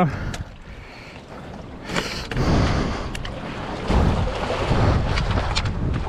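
Water washing and splashing against a rock wall, with wind buffeting the microphone; the rushing grows louder from about two seconds in and swells twice.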